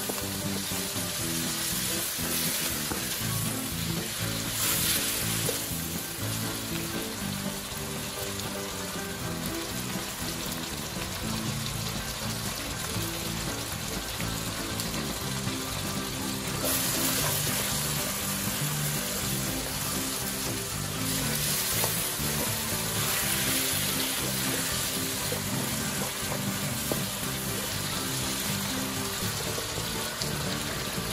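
Oil sizzling steadily in a wok as pieces of fried fish are stir-fried with shredded ginger, carrot, sweet pepper and spring onion.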